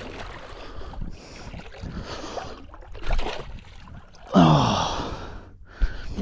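Water sloshing around the legs of a man wading through a shallow channel. About four seconds in comes a louder splash with a short, falling grunt as a hand spear is thrust into the water, a missed strike at a stingray.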